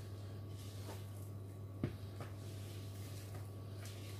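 Faint scraping and squishing of a spatula folding thick cake batter in a plastic mixing bowl, with one soft knock about two seconds in, over a steady low hum.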